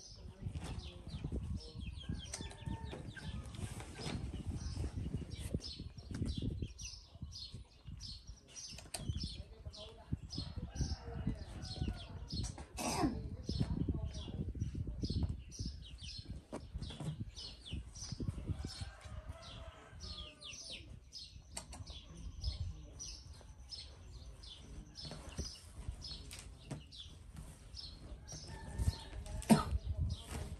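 Rustling and crackling of hair as a macaque picks through it with its fingers during grooming, close to the microphone, with a run of short high ticks throughout.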